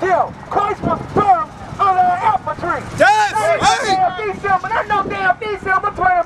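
A man preaching in loud, shouted phrases through a handheld megaphone.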